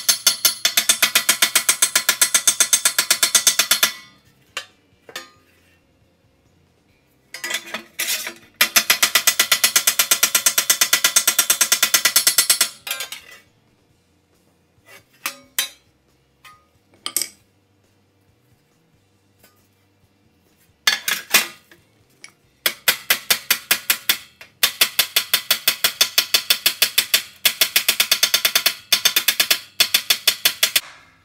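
Hand hammer striking 18-gauge sheet steel hung over the edge of a steel block, to move the metal over the edge. The blows ring sharply and come fast, about six a second, in long runs broken by pauses with only a few single taps.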